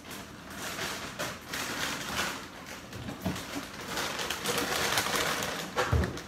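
Rustling and irregular knocks of things being handled as a cereal box and a milk jug are fetched from the kitchen cupboard and fridge.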